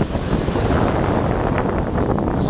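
Strong wind buffeting the microphone, a loud steady rumble with sea waves beneath it, and a few brief crackles near the end.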